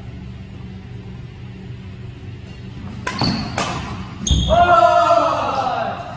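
Two sharp badminton racket strikes on a shuttlecock about half a second apart, a little past halfway, in a large echoing hall. Then comes the loudest sound, a drawn-out wavering pitched sound lasting about a second and a half.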